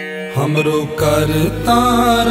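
Sikh shabad kirtan music at the opening of a track: after chime-like notes, a fuller band of sustained melodic notes swells in about a third of a second in, and a steady low drone joins about a second in.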